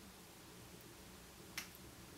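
Near silence, broken by one short sharp click about one and a half seconds in.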